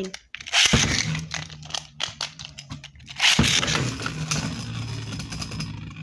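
Two Beyblade spinning tops launched into a plastic stadium one after the other, each landing with a sudden loud hissing start, the first about a second in and the second about three and a half seconds in. The tops then spin with a steady low hum, rattling and scraping on the stadium floor.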